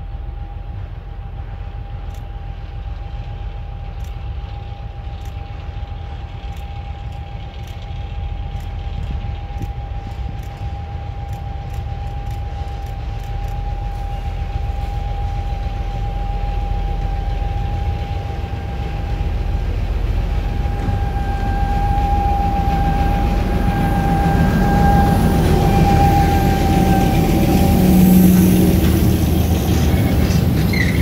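PKP ST44 diesel locomotive (Soviet M62 type, two-stroke V12) approaching at the head of a freight train, its engine rumble growing steadily louder and passing close by near the end, with a steady high whine throughout.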